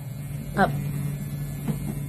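Permanent-makeup machine pen running with a steady low hum as its needle works an eyeliner stroke into a practice skin.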